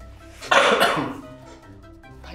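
A man coughs once, about half a second in, over background music with steady held notes.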